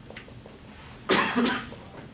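A person coughing: one short cough in two quick parts, about a second in, loud against a quiet room.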